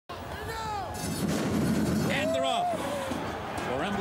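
Starting gate banging open as a field of Thoroughbreds breaks, with a sharp clang among the noise of the start, under a race caller's voice.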